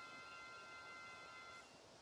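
Near silence with a faint steady high tone of several pitches sounding together, which cuts off about one and a half seconds in.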